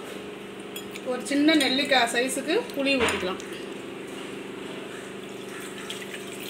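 A woman speaks briefly for about two seconds over a steady kitchen hum, with a few light clinks of utensils against the aluminium cooking pot.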